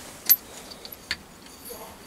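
Small metal tool clicking and clinking against the metal clamp of a camera-mount arm on a lathe carriage: a sharp click about a third of a second in, another about a second in, with faint light clinks between.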